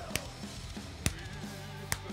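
A slow hand clap, three single claps just under a second apart, over faint background music.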